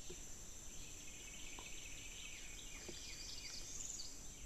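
Faint outdoor ambience with a steady, high-pitched insect drone. Over it come short falling chirps, most of them in the second half.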